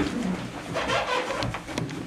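A roomful of people rising from metal-framed stacking chairs: shuffling, chair creaks and a few sharp clicks and knocks.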